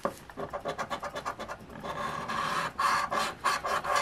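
A coin scratching the coating off a lottery scratch-off ticket in quick back-and-forth strokes, a dry rasping scrape that gets louder about halfway through.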